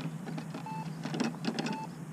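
A short electronic beep repeating about once a second, twice here, with a few light clicks and rattles between the beeps.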